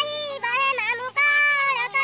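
A high female voice singing a held, bending melody of an Odia Kumar Purnima song over a steady low accompanying note that steps up in pitch about one and a half seconds in.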